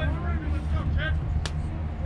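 A steady low rumble, like an engine or wind on the microphone, with faint voices and one sharp crack about one and a half seconds in.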